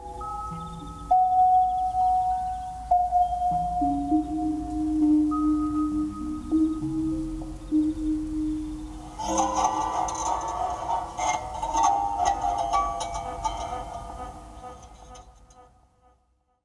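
Sound art from the Snigelofonen sculpture: slow, sustained electronic-sounding tones, one or two at a time, shifting in pitch every second or so. After about nine seconds they thicken into a denser layer of many tones with high clicks, then fade away near the end.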